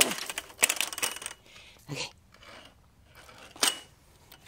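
Sharp clicks and light metallic clinks from a pool skimmer net and its pole being handled: a quick cluster in the first second, then one more near the end that rings briefly.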